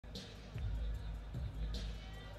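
Background music with a heavy, regular bass beat, thumping several times in the two seconds.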